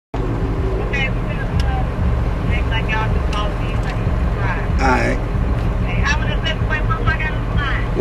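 Steady low rumble of a vehicle interior while it moves, with several people talking indistinctly in the background.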